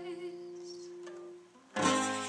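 Acoustic guitar chord ringing out and fading almost to nothing about a second and a half in, then a fresh strummed chord near the end.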